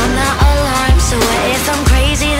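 A pop song playing: a sung vocal line over a heavy, repeating kick-drum beat.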